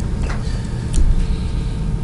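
Steady low rumble of room noise, with a few faint clicks.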